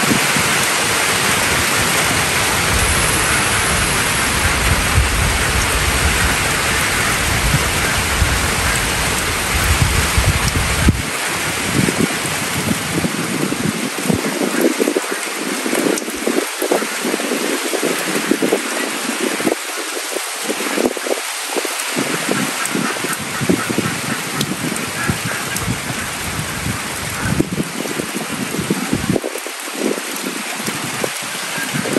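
Steady heavy rain falling on a corrugated roof and the ground around it, with drops running off the roof edge. A low rumble underlies it for roughly the first third and then stops.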